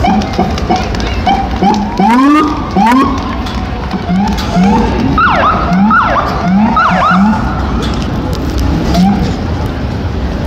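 Police motorcade sirens giving short rising chirps, many in quick succession and some overlapping at different pitches, thinning out after about seven seconds, over the rumble of vehicle engines.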